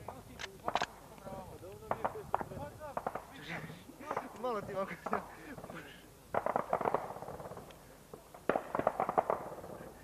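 Gunfire: a few single shots in the first seconds, then two rapid bursts of automatic fire, one about six seconds in and one near the end, with men's voices between them.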